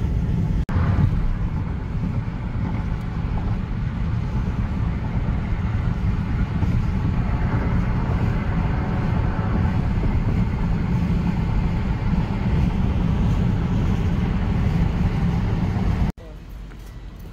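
Steady rumble of a moving car heard from inside its cabin, with a brief break about half a second in.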